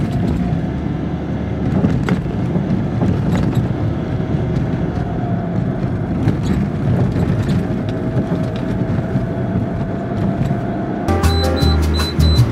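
Car interior noise while driving along a city street: a steady low rumble of tyres and engine, with scattered knocks and ticks over a rough, patched road surface. Music with brass comes in about a second before the end.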